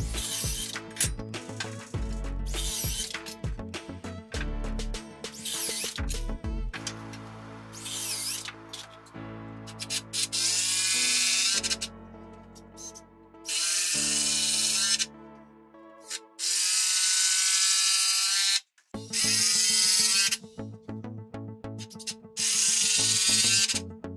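Cordless drill-driver running in several short bursts of a second or two each, mostly in the second half, over background music.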